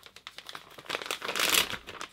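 A crumpled tissue or paper towel crinkling and rustling as it is rubbed and dabbed over a painted canvas. The scratchy rustle is louder in the second half and stops near the end.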